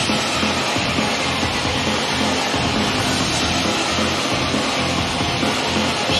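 Upbeat J-pop idol song played loud through a PA speaker: a full, dense backing track with a steady, driving beat.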